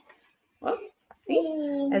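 A short rustle of the picture book's paper as it is lifted and turned toward the camera, followed by a drawn-out voiced sound from the reader that leads straight into her speech.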